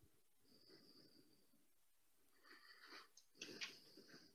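Near silence: room tone, with a few faint breaths picked up by a close microphone in the second half.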